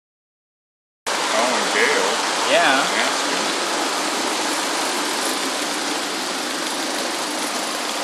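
Tiny high-revving four-stroke gasoline engine (3/8 in bore, 1/2 in stroke) of a model Hornsby 0-4-0 locomotive running steadily, a dense even buzz that cuts in about a second in.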